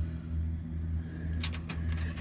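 A steady low mechanical hum, with a few sharp clicks about a second and a half in as the clay-coated quartz cluster is set back down among other rocks on a plastic mesh screen.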